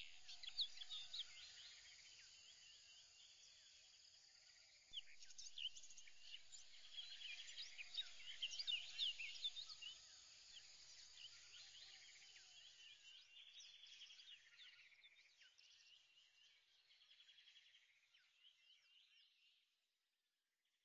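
Faint chorus of many birds chirping and calling, getting busier about five seconds in and fading away by the end.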